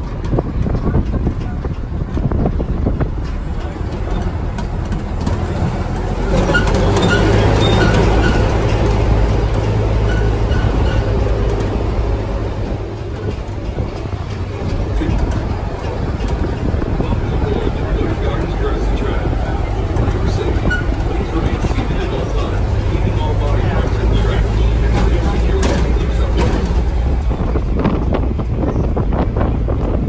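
Open-air theme-park tram running and rolling along, a steady engine and road drone that grows louder about six seconds in, with indistinct voices over it.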